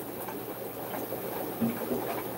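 Steady background hiss with faint bubbling from aquarium equipment, with a short low sound near the end.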